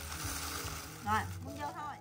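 A woman's voice saying a couple of short words over a faint, steady background hiss.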